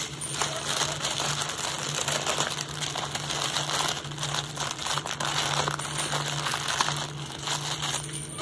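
Small plastic bags of diamond-painting drills being handled: a steady crinkling of plastic, with the tiny stones clicking and rattling inside.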